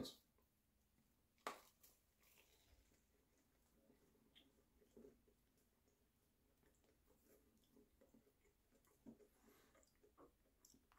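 Near silence: faint chewing of a mouthful of biscuit breakfast sandwich, with one short click about a second and a half in and two fainter ones later.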